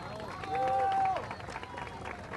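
Rally crowd calling out in a pause between the speaker's sentences. Several voices hold a call for about a second, over scattered sharp clicks.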